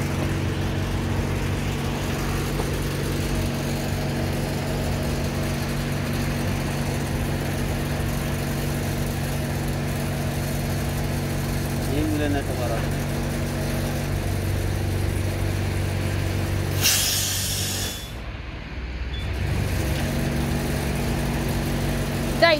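A car tyre being filled from an air hose, with a steady low machine hum throughout. About 17 seconds in, air hisses sharply for about a second, and the hum briefly drops before it comes back.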